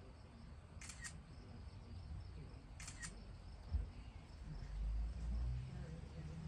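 Faint outdoor ambience with a low rumble on the microphone that swells near the end. Two short, sharp double clicks come about two seconds apart.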